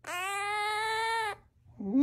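A pet parrot giving one long, drawn-out, wailing call held at a steady pitch, which cuts off after about a second and a half. Another call begins near the end.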